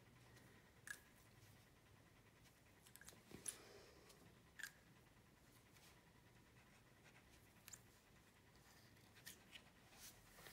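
Near silence: room tone with a few faint, short clicks and taps scattered through it.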